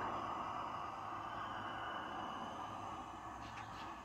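Small canister camp-stove burner running steadily, its gas flame giving a low, even hiss that eases slightly near the end.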